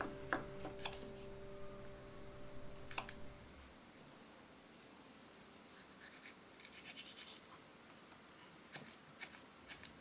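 Knife cutting on a wooden cutting board: scattered light taps and scrapes, first as mushroom stems are diced, then, in the second half, as fresh red and green chili peppers are sliced.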